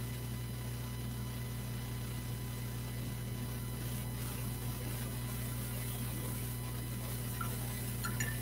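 Steady low electrical hum with quiet room tone and a few faint, thin steady tones above it; nothing else stands out.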